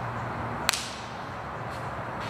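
Altar vessels clinking once, sharply, with a brief ringing tail, about two-thirds of a second in, over a steady low background hum.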